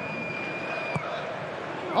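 Steady murmur of a football stadium crowd, with one thin, steady whistled note that lasts under a second, starting just after the beginning.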